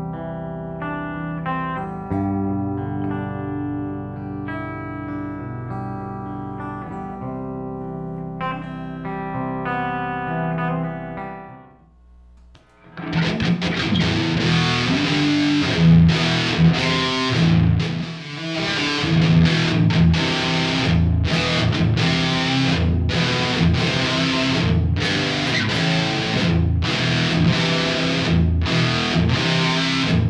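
Schecter Avenger 40th Anniversary electric guitar played through a Marshall amp. For about the first twelve seconds it plays clean, ringing notes and chords. After a brief pause it switches to heavily distorted rhythm riffing with short, rhythmic stops.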